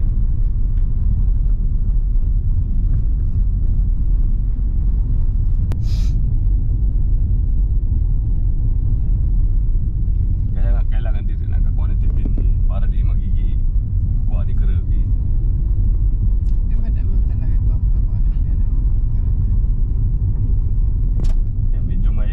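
Steady low rumble of a car on the move, heard from inside the cabin: engine and tyre noise on the road. A single sharp click comes about six seconds in, and another near the end.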